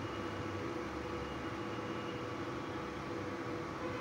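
Hot oil sizzling steadily as two puris deep-fry in a kadhai, with a faint steady hum under it.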